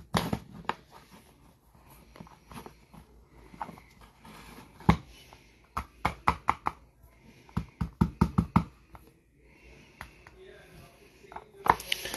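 Trading cards and their cardboard box being handled: sharp clicks and taps as a tight stack of cards is worked out of the box, with quick runs of taps about six seconds in and again around eight seconds. The last card is stuck in the box.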